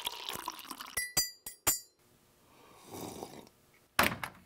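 Coffee pouring in a stream from a glass press pot into a ceramic mug, ending about a second in. Three sharp, ringing glass clinks follow, then a soft swell of low noise.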